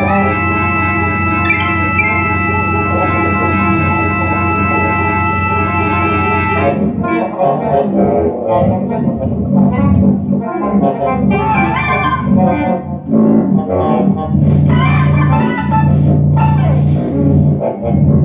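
Keyboard synthesizer holding a steady organ-like chord, which cuts off about seven seconds in. It gives way to a broken, stuttering texture of shifting tones and short noisy bursts: freely improvised electronic music.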